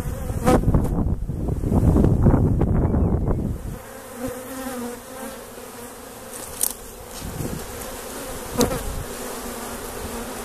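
Loud low rumbling noise on the microphone for the first few seconds. After that, honeybees hum steadily at a hive entrance crowded with bees at a pollen trap, and single bees zip close past the microphone a couple of times.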